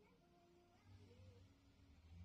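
Near silence: faint short steady tones, with one faint call that rises and falls about a second in.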